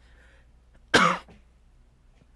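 A man coughs once, briefly, about a second in.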